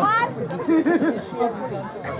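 Several people talking at once in the background, with no single clear speaker.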